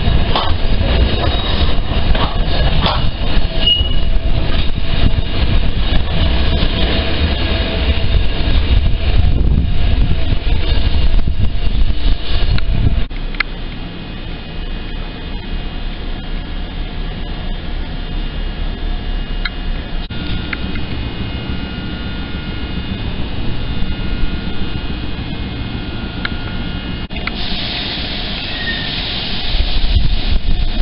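A Fukui Railway tram running past close by with a heavy, low rumble. It cuts off suddenly about halfway through to a quieter hum, and a tram is heard drawing in again near the end.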